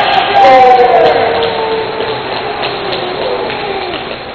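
A person howling like a wolf: a long drawn-out howl, loudest about half a second in, that slowly slides down in pitch and tails off near the end.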